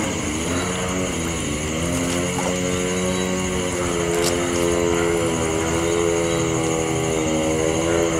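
An engine running steadily, its pitch wavering slowly, over a constant high-pitched insect chorus.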